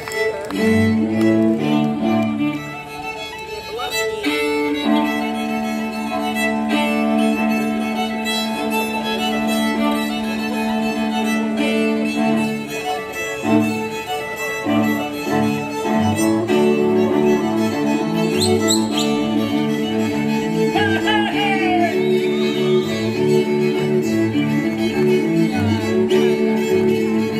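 Slovak Terchová folk string band playing live: fiddles over a steady, repeating low string accompaniment, amplified through the stage loudspeakers.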